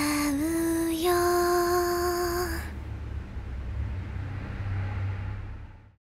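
A woman's singing voice holds the song's final note, stepping up slightly in pitch, over soft pop accompaniment. The note stops about two and a half seconds in, leaving a faint low hum that fades out to silence at the end.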